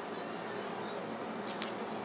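A low, steady buzzing hum with one small click near the end.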